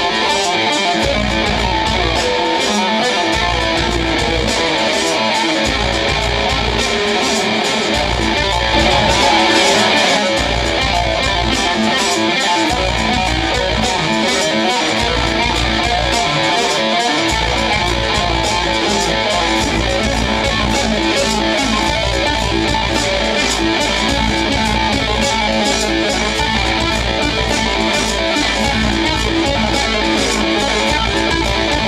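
Electric guitar played live through an amplifier in an instrumental piece, dense and continuous. A deep low part drops in and out several times in the first half, then runs steadily, with the playing briefly louder about nine seconds in.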